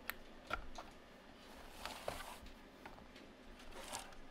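A few faint sharp clicks and a short soft rustle of hands handling an opened UPS unit's metal chassis and plugging in its power cord.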